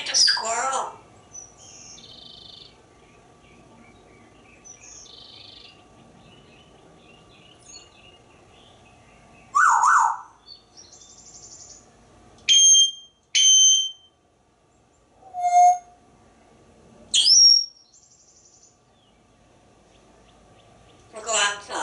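An African grey parrot makes a string of separate whistles and calls. There is a loud call about halfway through, then two sharp whistles a second apart, a short low note and a rising whistle near the end. Faint chirps sound in between.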